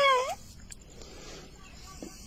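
An old man's voice breaking into a short, high, wavering cry at the very start, then only faint outdoor background.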